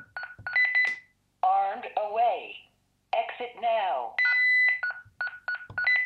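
Honeywell Lynx Touch L7000 alarm panel beeping at each touchscreen key press as the arming code is entered. The panel's recorded voice then speaks two short phrases. A longer beep and a run of short, evenly spaced beeps follow, which is the panel's exit-delay countdown as it arms in Away mode.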